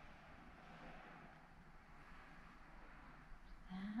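Near silence with the faint, soft scratching of a paintbrush laying paint onto a stretched canvas.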